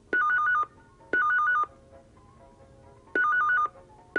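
Telephone ringing with a fast electronic two-tone trill, in the double-ring pattern: two short rings at the start, a pause, then two more about three seconds in.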